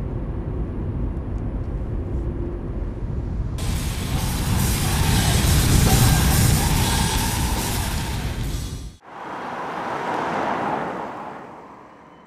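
Car road noise: a low rumble inside the cabin, then from about three and a half seconds a loud hiss of a car driving past on a wet road, which cuts off sharply near nine seconds. A second hiss then swells and fades away.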